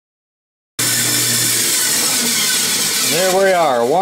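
Silence, then about a second in a metal-cutting bandsaw comes in abruptly, running with a loud, steady hiss as its blade cuts cast aluminium. A man's voice starts near the end.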